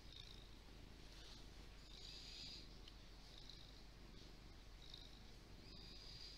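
Domestic cat purring faintly, the purr swelling and fading about every second and a half with its breaths.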